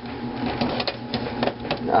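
Irregular plastic and metal clicks and rattles from a disk drive being worked loose and lifted out of an old Dell desktop's drive bay after its release tabs are pulled.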